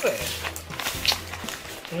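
Newspaper wrapping of a parcel crinkling and rustling as it is handled, with a few sharp crackles, the loudest about a second in, over background music.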